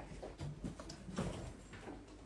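Quiet room with a few faint light knocks and shuffles of a person moving about.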